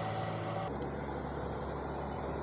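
Heavy goods trucks' diesel engines running steadily as a low drone, the sound changing abruptly less than a second in.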